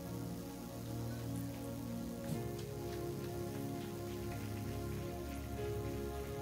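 Soft background music of sustained chords that changes to a new chord about two seconds in, over a steady hiss.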